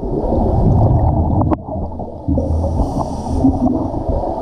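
Muffled underwater sound effect: a loud, steady low rush of gurgling water.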